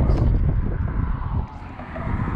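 Low rumbling wind noise buffeting the camera's microphone, easing off sharply about one and a half seconds in.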